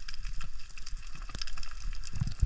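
Underwater reef ambience picked up by a submerged camera: a constant fine crackling of many tiny clicks over a low rumble of moving water.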